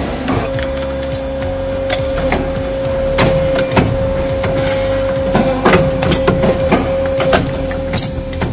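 Factory metalworking machines running with a steady hum, and a run of sharp clacks and knocks from about three seconds in as a tube-bending machine works copper tubing.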